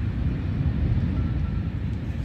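Beach ambience: a steady low rumble of wind on the microphone, with small waves washing up on the sand.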